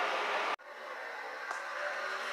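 Steady blowing of a shop heater's fan, cut off abruptly about half a second in. A fainter steady hiss follows.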